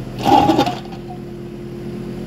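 Kubota micro excavator's small diesel engine running steadily under hydraulic work as the boom lifts the bucket, with a brief louder burst about a quarter second in.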